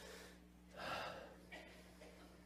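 A man's short intake of breath into a lectern microphone about a second in, over a faint steady electrical hum, with a small click after it.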